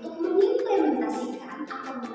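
A woman singing a song over backing music with a steady beat.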